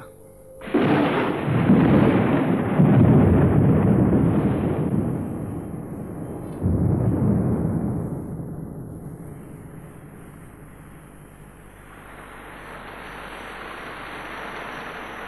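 Thunder rumbling in two long rolls. The first starts suddenly about a second in and swells for several seconds; the second breaks in about halfway through and dies away slowly.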